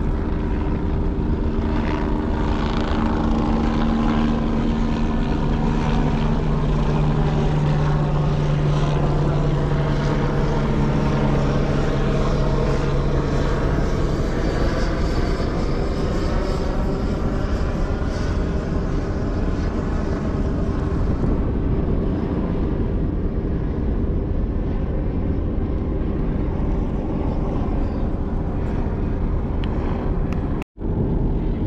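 Propeller aircraft flying low past overhead, its engine drone strongest through the first half and fading out past the middle, over a steady rushing background.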